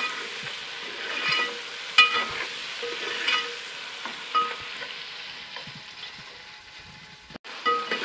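Tomatoes and onions sizzling in oil in an aluminium pot while a metal spoon stirs them, sautéing the tomatoes until soft. The spoon scrapes and strikes the pot with short ringing clinks about once a second through the first half. The sound cuts out for a moment near the end.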